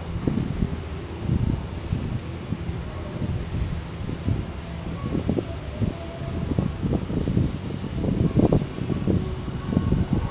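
Thick rope pulled hand over hand, hauling a 165 lb load across artificial turf. Uneven low thuds and rubbing come about one and a half to two times a second, one for each pull.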